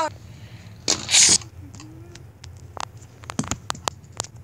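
Two Beyblade spinning tops whirring in a plastic stadium, clacking against each other in a run of sharp clicks toward the end, with a short hiss about a second in.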